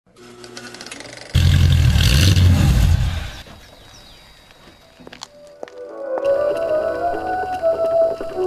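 A sudden loud, low rumble with hiss begins just over a second in and dies away over about two seconds. A few sharp clicks follow. About six seconds in, funk music with horns starts.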